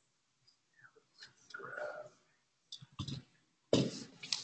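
A few sharp clicks and knocks, the loudest just before the end, with a short muffled voice in the middle.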